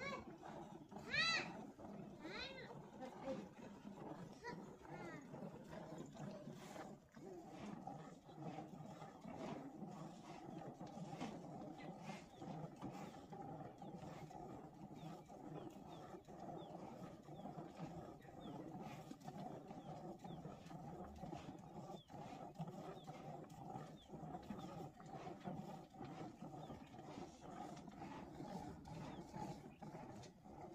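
A loud, high animal call about a second in, followed by two or three shorter calls, then a steady low background with faint small chirps, while a cow is milked by hand into a plastic bucket.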